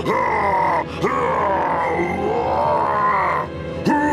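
A cartoon character's voice crying out in two long, wavering cries as he transforms into a monster, the first about a second long and the second about two and a half seconds, over background music.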